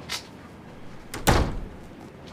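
A door shutting with a single loud thud a little over a second in, after a light click near the start.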